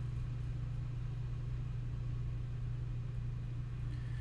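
A steady low hum with no other sound in it.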